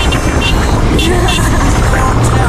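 Four-wheel drive driving along an unsealed dirt road: loud, steady road and wind noise with low rumble.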